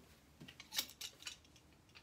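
Several light, sharp clicks of clothes hangers being handled on a rack, faint and irregular in the first part.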